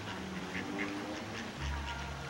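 Mallard ducks quacking, a few short calls in the first second, with a low rumble coming in near the end.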